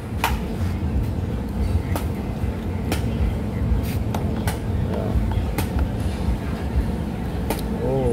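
Busy street ambience: a steady low rumble of traffic with background voices, and several sharp clicks or knocks at irregular intervals.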